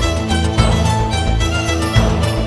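Background music with a steady beat and string instruments.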